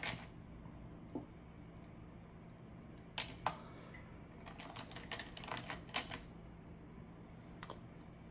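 Light clicks and taps from makeup products and tools being handled on a table: a pair about three seconds in, then a quick cluster around five to six seconds.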